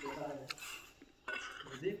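A sharp metal-on-metal clink about half a second in, from a metal snake hook knocking against the iron step rungs set in the wall of a well, with a man talking.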